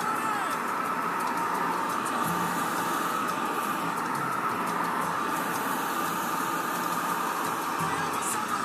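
Handheld hair dryer running steadily: a constant whine over the rush of blown air.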